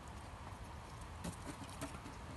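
A mink's claws tapping on wooden deck boards as it moves off, a few quick light taps in the second half, over a faint steady outdoor background.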